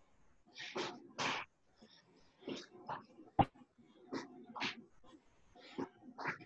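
Short, forceful exhalations, one or two a second, from a person breathing hard under exertion. A single sharp knock sounds about three and a half seconds in.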